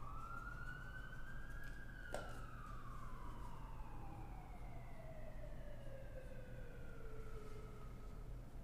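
A siren wailing: one tone rises over about two seconds, then falls slowly and fades near the end. A single sharp click about two seconds in.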